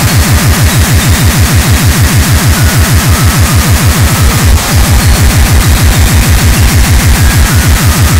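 Speedcore at 390 BPM: a rapid, even train of heavily distorted kick drums, about six and a half a second, each dropping in pitch, under a harsh wall of noise. The kicks break off for an instant about four and a half seconds in.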